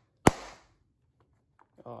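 A wooden glove mallet strikes the pocket of a water-soaked leather baseball glove once, a single sharp hit about a quarter second in, pounding a deep pocket into the glove during hot-water break-in.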